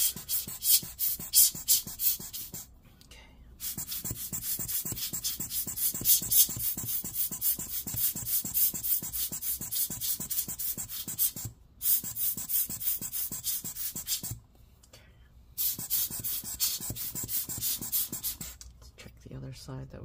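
Rapid, scratchy rubbing strokes on a laptop logic board as it is dried and scrubbed after cleaning with isopropyl alcohol. The strokes run in long spells, stopping briefly three times.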